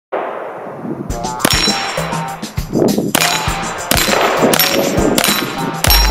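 .22 rimfire shots fired in quick succession from a Ruger Charger, starting about a second in at roughly two to three a second. The hits ring on the steel plates of an Action Target rimfire dueling tree.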